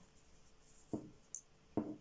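Faint handling of a knitting swatch: needle and cotton yarn rubbing and scratching, with a brief click about halfway and two short vocal blips such as breaths or murmurs.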